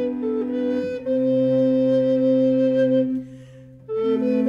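A recorder consort with cello playing an Elizabethan masque tune in several parts. The parts hold a chord for about two seconds, break off briefly near the end, and start the next phrase.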